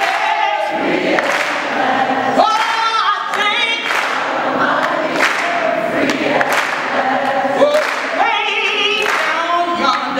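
A woman singing into a microphone, holding long notes with vibrato.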